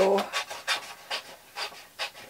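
Scissors cutting through a coloring-book paper page in a quick run of short, crisp snips, about three a second.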